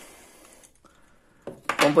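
Faint handling of small wooden puzzle pieces being fitted together by hand, with quiet light knocks of wood on wood.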